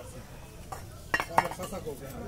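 A metal pot lid clinking against a metal pot as it is handled and set in place, with a couple of sharp clinks a little over a second in.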